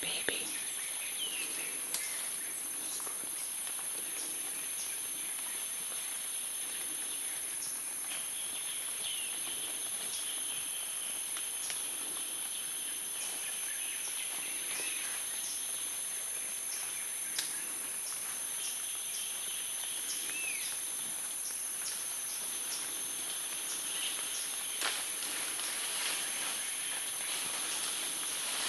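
Forest ambience: a steady high-pitched insect drone runs throughout, with a few short bird calls and occasional faint clicks and snaps.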